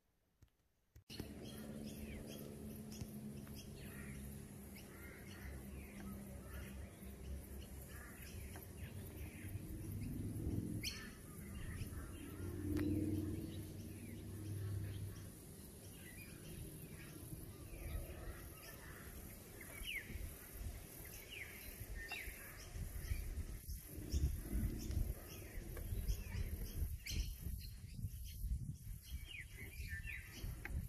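Outdoor ambience of small birds chirping intermittently over a low steady rumble, starting about a second in after a brief silence; the rumble grows louder near the end.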